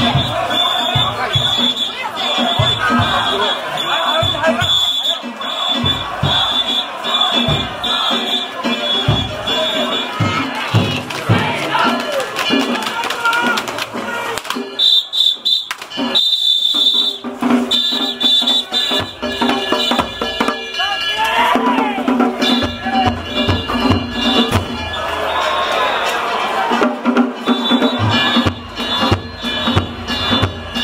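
A danjiri festival float being hauled: a crowd of rope pullers shouting over the float's festival music of drum and gong strikes. A steady high-pitched tone sounds through much of it.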